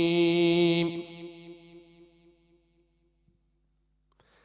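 A male Quran reciter's melodic recitation: he holds the long final note of the basmala at one steady pitch and breaks off about a second in. An echo of the note fades over the next second or so, then near silence.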